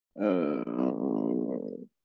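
A person's long drawn-out groan-like vocal sound, about a second and a half, its pitch wavering.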